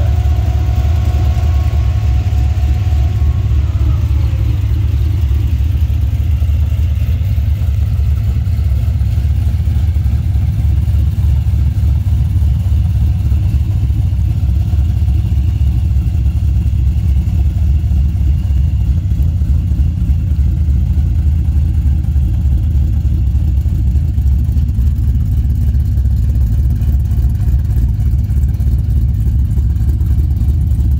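Twin-turbo LS3 V8 of a 1971 Chevelle restomod idling steadily, a deep, even low rumble.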